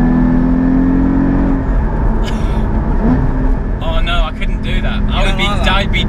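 Porsche Cayman GT4's 3.8-litre flat-six heard inside the cabin: a steady engine note under load for the first couple of seconds, then off throttle. About three seconds in there is a quick rising throttle blip as the manual gearbox downshifts with automatic rev matching. Voices talk and laugh over the engine from about four seconds.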